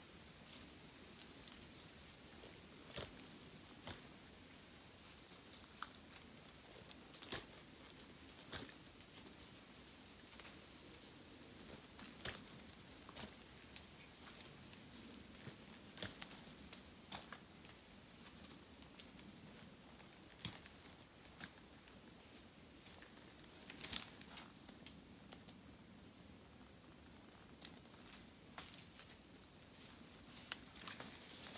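Faint, irregular sharp taps and scrapes, one every second or two, from Kiwi Klimber climbing spurs kicking into tree bark and the lineman's belt shifting on the trunk as a climber works his way down a tree.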